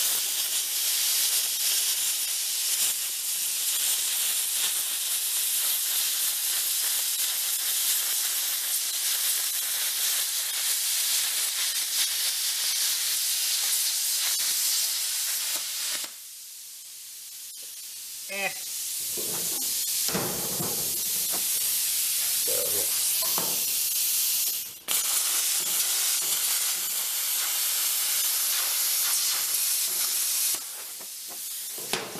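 Air plasma cutter cutting, a loud steady hiss of air and arc: one long pass that stops about halfway, then a second pass starting about three quarters of the way in. The cutter is turned up to full output and still only half burns through the metal.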